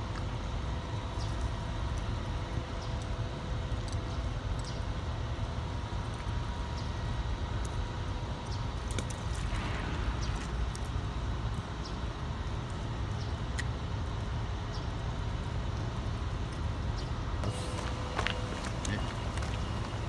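Steady low machinery hum with a faint constant whine, and a few light clicks now and then.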